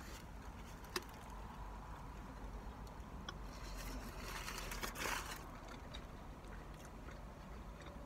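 Quiet chewing of a bacon cheeseburger, with a sharp click about a second in and a brief crinkling rustle of its foil wrapper about four to five seconds in, over a steady low hum of the car cabin.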